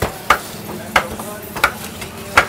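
Three sharp cleaver chops on a wooden chopping block, evenly spaced about two-thirds of a second apart, over a steady market din.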